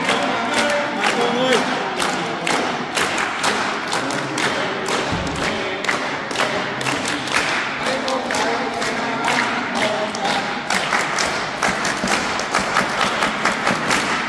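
A group of people clapping their hands in a steady rhythm, with voices over the clapping.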